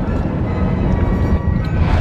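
Music with a strong, heavy bass.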